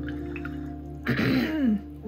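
A woman clearing her throat once, about halfway through, a short rasp falling in pitch. She has a frog in her throat. Soft background music with held notes plays underneath.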